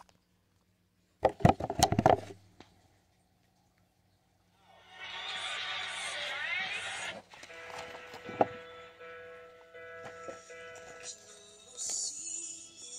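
Loud knocks and handling noise about a second in, then after a pause a burst of crowd cheering with whistles about five seconds in, giving way to music with steady held notes.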